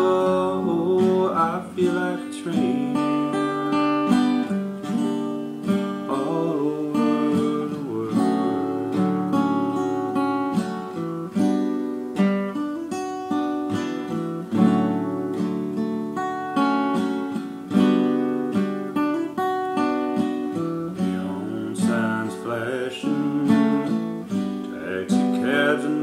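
Solo acoustic guitar playing chords in a steady, unhurried rhythm, an instrumental passage without singing.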